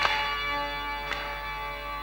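Bhajan accompaniment between sung lines: a held drone chord sounding steadily, with small metal hand cymbals struck twice, once at the start and again about a second later.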